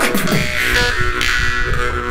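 Two jaw harps (vargans) droning together with shifting overtones, over a beatboxed rhythm of bass-heavy vocal beats.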